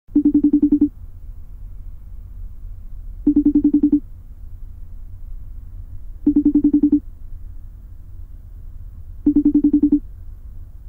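A pulsing ringing tone, like a telephone ringer, sounding in four short bursts about three seconds apart over a steady low hum.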